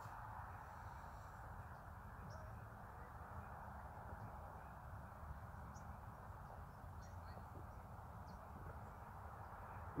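Faint, steady outdoor background noise with a few faint, short bird calls scattered through it.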